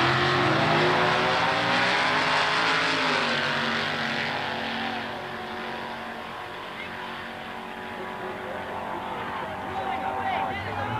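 Drag race cars, a dragster among them, launching from the starting line at full throttle and running down the strip. The engines are loud over the first few seconds, then fade as the cars pull away.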